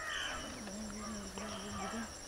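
Outdoor village ambience: an animal call at the very start, then a low, steady held call for about a second, over a faint, steady high-pitched whine.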